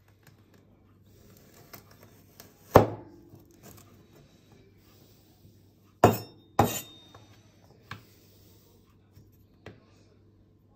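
A steel meat cleaver chopping through a carrot, the blade striking a hard countertop with a sharp, clinking chop. One loud chop about three seconds in, two more close together about six seconds in, and a few lighter taps between.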